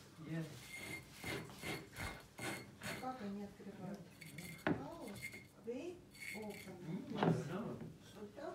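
Metal corkscrew clicking, scraping and clinking against the neck of a glass wine bottle as it is worked into an old, dried-out cork that will not come out. There are many small sharp clicks, some with a short metallic ring.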